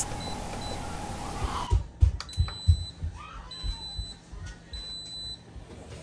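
Instant Pot electric pressure cooker beeping as its pressure-cook program is set: a couple of short faint beeps at the start, then three longer high beeps about a second apart, with a few low dull knocks.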